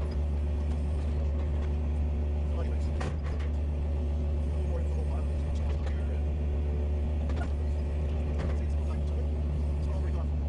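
Heavy-equipment engine running at a steady speed, heard from inside the machine's cab, with a few faint clicks and rattles.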